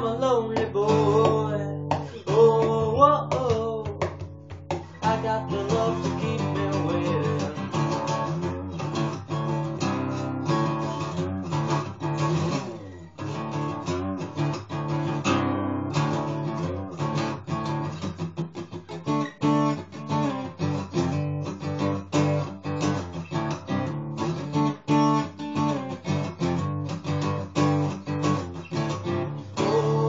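LAG Tramontane 222 acoustic guitar strummed in a steady, driving rhythm, recorded through a phone's microphone. A man's voice sings over the first few seconds and comes back right at the end.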